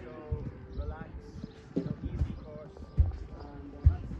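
Irregular dull low thuds, the loudest about three seconds in and just before the end, with people talking faintly in the background.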